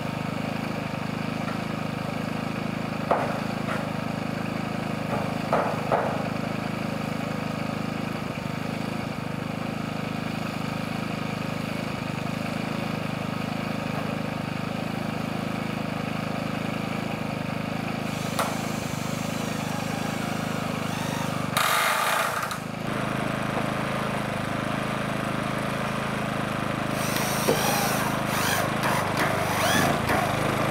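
A steady engine drone runs throughout, with a few sharp knocks early on. Near the end a power drill drives hex-head screws into corrugated iron roofing sheets in short bursts.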